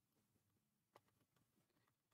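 Near silence: quiet room tone, with a faint short click about a second in.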